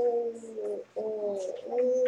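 A voice humming or drawing out a vowel in long, slightly falling held tones: two of about a second each, then a third starting near the end.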